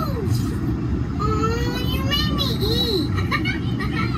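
Steady low rumble inside the ride submarine's cabin, with high-pitched children's voices chattering over it in no clear words.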